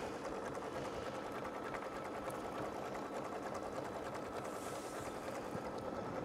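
Home embroidery machine running steadily, stitching straight diagonal accent lines into a quilt block in the hoop; a fairly quiet, even mechanical sound.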